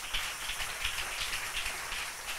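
Congregation applauding: a steady, even patter of many hands clapping.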